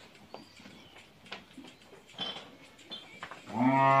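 A cow moos once near the end, a loud steady low call that begins about three and a half seconds in; before it there is only faint shed background with a few small knocks.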